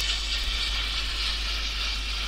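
Steady hiss with a low hum beneath it and no distinct events: the background noise floor of the voice-over recording.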